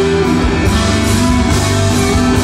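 Live rock band playing loudly: electric guitars and bass guitar over drums with an even beat.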